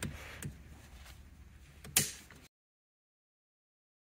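Small plastic clicks from wiring connectors being plugged into the steering-column clock spring, with one sharp, loud click about two seconds in as a connector snaps home. The sound then cuts out abruptly.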